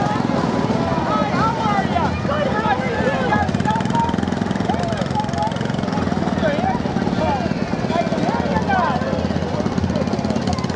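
An engine running steadily in a low drone, with people's voices and short whistle-like calls rising and falling over it.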